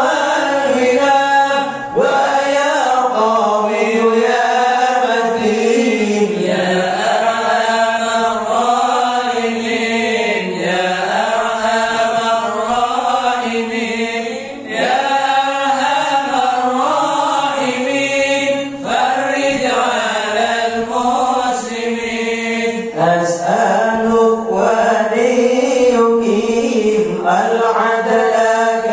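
A group of men chanting an Islamic devotional dhikr together into microphones, unaccompanied, in long melodic phrases that rise and fall, with brief pauses for breath about two seconds in and near the middle.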